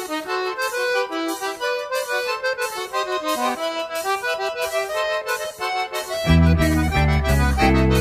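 Forró music in an instrumental break: an accordion (sanfona) plays the melody with light, regular percussion ticks and no bass. About six seconds in, the bass end of the band comes back in under it.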